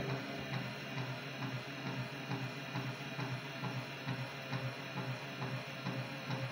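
A 12-volt DC motor turning a geared AC motor on a steel base plate, running with a steady hum and a light, regular knocking: the rig is wobbling and bumping against the table.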